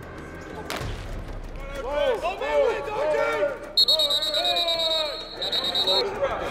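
A sharp hit just under a second in, then men whooping and yelling wordless, rising-and-falling calls. A high, trilling whistle sounds through the last two seconds.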